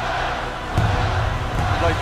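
Arena crowd chanting and cheering while a basketball is dribbled on the court; a low bass music bed comes in under it a little under a second in.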